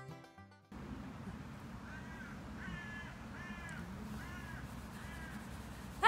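Banjo music fades out at the very start. It gives way to faint outdoor hiss, with a bird calling about five times in short, arched calls spaced under a second apart.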